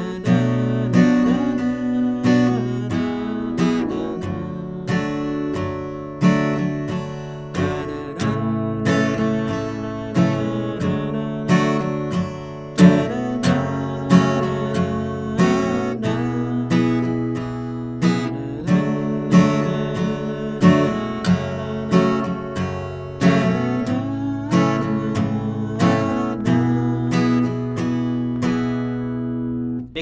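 Acoustic guitar with a capo, strummed with a pick in a steady rhythm through a progression of open chords, the chords changing every few seconds.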